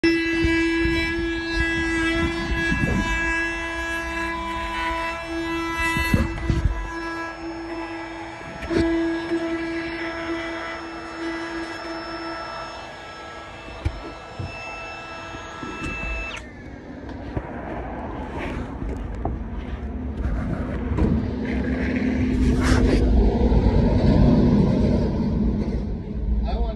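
Cordless compact router spinning at high speed with a steady whine, then, after an abrupt change about sixteen seconds in, a rougher, noisier sound that grows louder near the end as the bit cuts hinge mortises into the wooden door edge through a hinge template.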